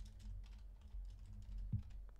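Typing on a computer keyboard: a run of quiet key clicks over a low steady hum.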